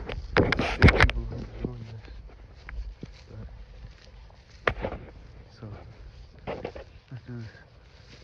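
Rustling and footsteps through tall grass, with the phone being handled, for about the first second. Then a quieter stretch with a few short, faint vocal sounds from the person holding the phone.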